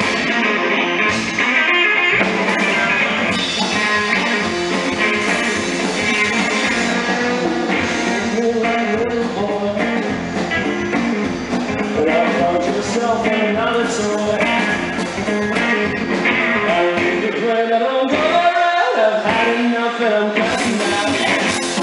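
Live rockabilly trio playing a song: upright double bass, electric guitar and drum kit.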